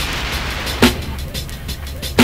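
Boom bap hip hop instrumental beat: a drum loop with one sharp snare-like hit about a second in and rapid hi-hat ticks over a low, steady bass.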